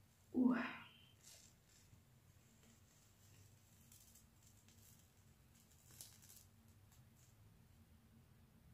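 A brief spoken 'oh', then the faint crackle and rustle of a Beauty Pro black peel charcoal mask being pulled off the skin, over a quiet steady hum.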